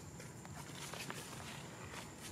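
Long-tailed macaques shifting and grooming against a tree: light rustling with many small, scattered clicks over a steady outdoor background hiss.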